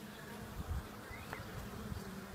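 Honey bees buzzing: a faint, steady low hum of many bees' wings.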